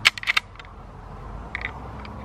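Metal clicks from a Marlin Model 1895 lever-action rifle being loaded with a .45-70 cartridge: a quick cluster of sharp clicks at the start, then a few fainter clicks about one and a half seconds in.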